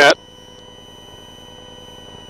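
A steady, high-pitched electronic whine: one unchanging tone with several overtones over a faint hiss.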